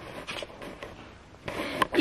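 Quiet room tone with a few faint clicks and rustles of a handheld camera being swung around.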